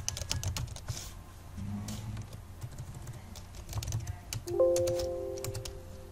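Computer keyboard typing and key clicks as a file name is typed. About four and a half seconds in comes a short chime of several steady tones that fades over about a second: a Windows alert sound.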